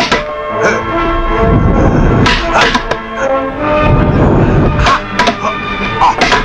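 Kung fu film fight soundtrack: background music with dubbed strike sound effects, several sharp hits landing at irregular intervals, the clearest pairs about two and a half seconds in and near the end.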